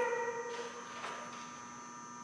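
A long, high pitched sound with overtones that fades out in the first moment, then a steady electrical hum with a faint tick about a second in.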